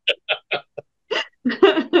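Laughter in a run of short, breathy, separate bursts, about four in the first second, turning into fuller voiced laughter near the end.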